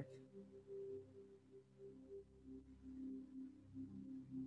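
Faint meditation background music: a few sustained low tones that swell and fade slowly, in the manner of a singing bowl or drone.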